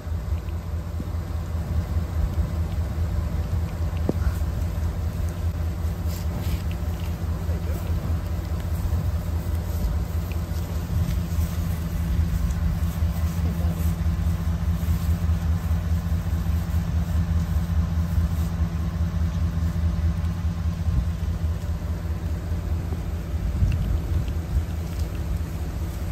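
Utility vehicle's engine idling steadily: a low, even drone.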